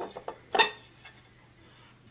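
A few light clicks, then one sharp metallic tap about half a second in, from hands working at the metal platter of a Sony PS-LX300USB turntable while its drive belt is hooked over the motor pulley.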